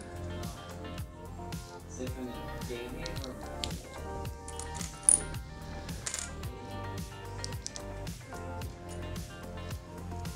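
Background music with a steady beat, over the small clicks and clinks of plastic LEGO bricks being handled and sorted, with one sharp click about five seconds in.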